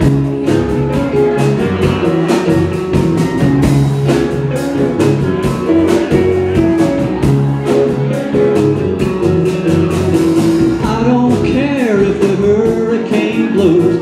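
Live rock band playing an instrumental passage: electric guitar, bass, keyboards and a drum kit with a steady cymbal beat. A wavering melodic line comes in near the end, just before the vocals start.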